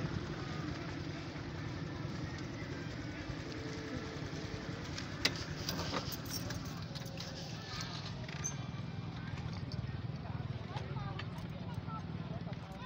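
Outdoor ambience at a busy motorbike lot: a steady low motorbike engine hum with people talking faintly in the background. One sharp click about five seconds in.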